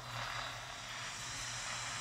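Steady background hiss with a low, even electrical hum underneath; no distinct event.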